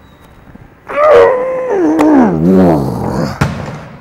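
A man's long, strained groan of effort, starting high and falling steadily in pitch with a wavering tremor over about two and a half seconds, as he forces out the last rep of dumbbell flyes.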